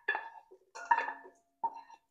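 A kitchen utensil clinking against a bowl about three times, each knock leaving a brief ringing tone, as sautéed onions are added to mashed potatoes.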